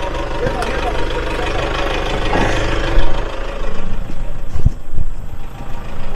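A 4x4 pickup's engine running at low revs as it crawls over a log crossing, with heavy thuds about three seconds in and again near the end as the vehicle drops over the logs.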